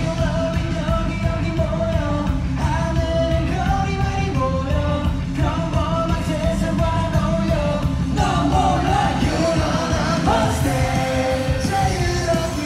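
Live K-pop concert music through the PA: a loud pop song with a heavy, steady bass beat and sung vocals.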